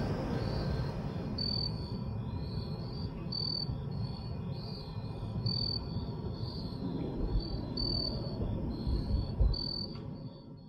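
Soft ambient music over night ambience: insects chirping in a regular high pulse about once a second, over a steady low rumble of the distant city.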